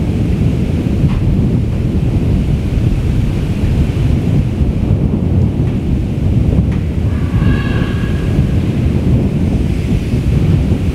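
Steady low rumble of wind buffeting the microphone. About seven seconds in, a brief high-pitched sound rises faintly above it.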